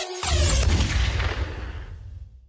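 A deep boom with a hissing tail, struck a fraction of a second in just as the electronic intro music cuts off, then fading away over about two seconds.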